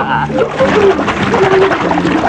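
A bucketful of water splashing down over a person, a rushing, sloshing noise that runs on from about half a second in, with a man's voice over it.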